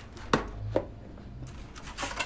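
Knife chopping on a wooden cutting board: a few sharp strokes, the two loudest about a third of a second and three quarters of a second in, with fainter ones near the end.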